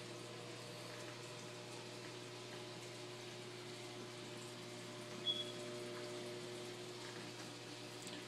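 Steady, low hum of a saltwater aquarium's circulation pumps with the soft rush of moving water, and a brief high blip about five seconds in.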